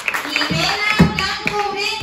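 Audience clapping, with drawn-out voices calling out over it from about half a second in. A single dull thump about a second in is the loudest sound.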